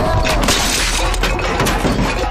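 A crash and clatter of metal pots as a man falls onto a bicycle cart stacked with steel vessels and tips it over, loudest about half a second in, then scattered clinks, over background music.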